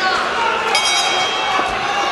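Voices in a large hall, with a single bell-like ring that starts suddenly about a second in and fades within a second: the signal that starts the round of the kickboxing bout.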